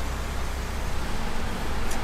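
Steady low hum with an even hiss inside a car's cabin.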